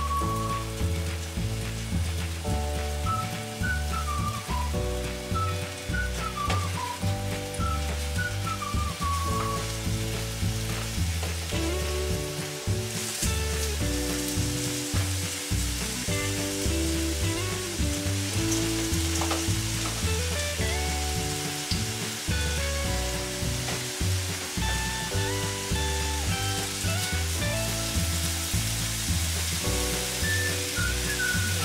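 Ground-beef burger patties frying in a little oil in a non-stick pan, with a steady sizzle. Background music with a pulsing bass line plays over it.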